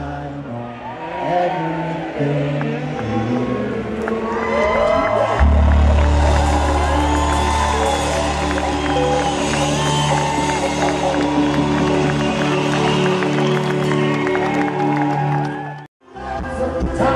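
Live band playing through an outdoor concert PA: a male singer over bass guitar, horn and percussion, with a heavy bass line coming in about five seconds in. The sound cuts out abruptly at the very end.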